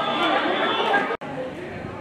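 Many overlapping voices chattering, the talk of players and spectators at the field. About a second in the sound cuts out abruptly, then the chatter picks up again more quietly.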